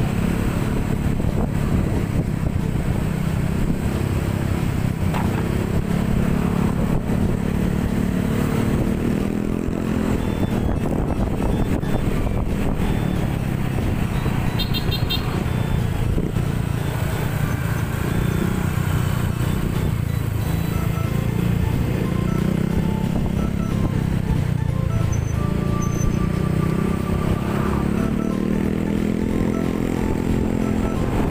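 Motor scooter engine running while riding in traffic, its pitch rising and falling with the throttle.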